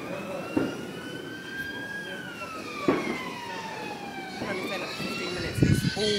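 Emergency vehicle siren wailing: a slow rise, a long fall, and a new rise starting near the end.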